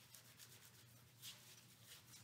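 Faint rubbing of hands together, a few soft strokes with the clearest just past the middle, over a low steady hum.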